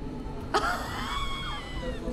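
A woman gasps sharply and then lets out a long, high-pitched squeal of astonishment at a magic trick's reveal.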